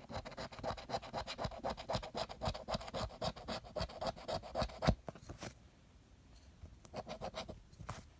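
A large coin scratching the latex coating off a paper scratch-off lottery ticket in quick back-and-forth strokes, several a second, for about five seconds. After a short pause comes a second, briefer burst of scratching near the end.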